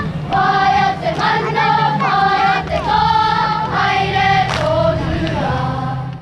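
A group of children singing together in unison, in phrases of held notes, over a steady low hum.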